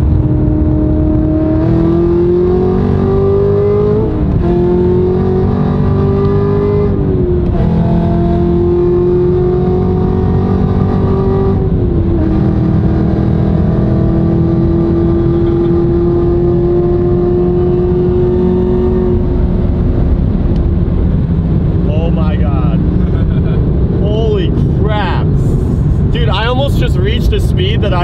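Hennessey Exorcist's supercharged 6.2-litre V8, with headers and straight-pipe exhaust, heard from inside the cabin under hard acceleration. The engine note climbs in pitch and drops sharply three times as the car shifts up through the gears, then holds a steady high-speed note before easing off near the end.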